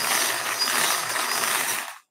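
Hand-cranked brass wire bingo cage turning, the balls inside tumbling and rattling against the wire as they are mixed before a number is drawn. The rattle stops suddenly near the end when the cage comes to rest.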